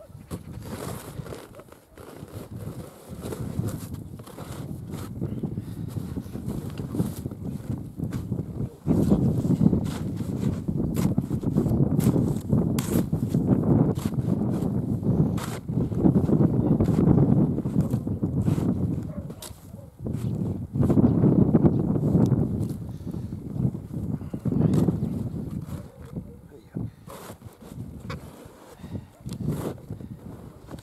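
Gusty wind rumbling on the microphone, swelling and easing every few seconds, over the scrape and crunch of a shovel digging snow off stacked hay, with scattered sharp ticks.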